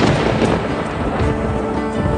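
Thunderstorm sound effect, a rumble of thunder with rain, mixed over a music sting as the weather-news title plays. The storm noise is loudest at the start and eases off, with a few held music notes underneath.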